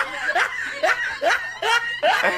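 Young men laughing in short repeated bursts, about two a second.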